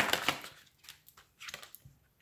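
Tarot cards being shuffled and drawn: a quick run of papery card clicks fades out in the first half second, then a few faint, separate ticks of cards being handled.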